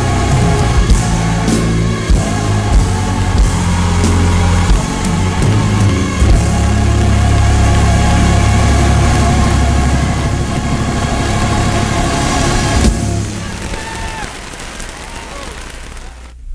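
Live gospel church music with a deep held bass, building to a final sustained chord that stops about thirteen seconds in and rings away.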